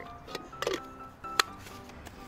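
Background music, with a few sharp clicks from a plastic lid being twisted onto a shaker bottle. The loudest click comes about one and a half seconds in.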